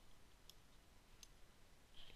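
Two faint, short clicks about three-quarters of a second apart over near silence: computer mouse clicks while switching browser tabs.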